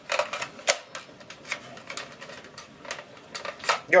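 Hard plastic parts of a Nerf Retaliator Elite blaster clicking and rattling as they are handled and its detachable shoulder stock is fitted and pulled off. The clicks are irregular, the loudest about two-thirds of a second in.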